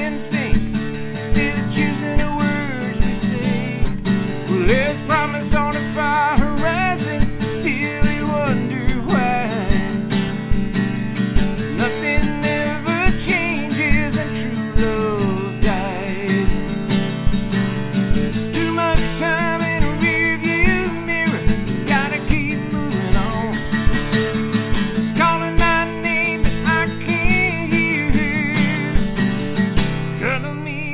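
Acoustic guitar playing an instrumental break in a country/Americana song: held chords under a bending melody line, over a steady beat.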